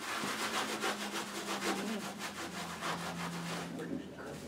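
Quick, repeated scratching strokes of a drawing tool across a board as an artist hatches lines, several strokes a second.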